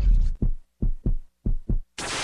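Heartbeat sound effect: deep double thumps with short silences between them, coming about every half second, after a louder thump at the start.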